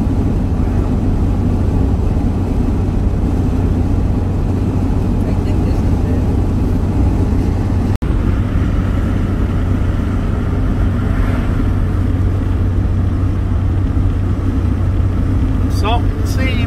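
Steady engine and road noise heard from inside the cab of a moving van. The sound cuts out for an instant about halfway through.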